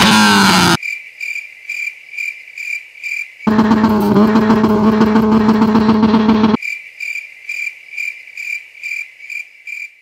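Crickets chirping steadily, about three chirps a second. Over them a car engine is revved hard through its exhaust: a held rev that sags slightly and cuts off under a second in, then another steady high rev held for about three seconds in the middle.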